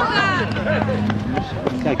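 Children's voices shouting and chattering, high-pitched, over a steady low hum that stops about a second and a half in.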